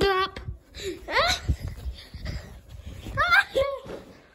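A child's excited high-pitched cries: a short one at the start, a steeply rising squeal about a second in, and another rising and falling cry just after three seconds. Low bumps and rustling from the phone being handled come in between.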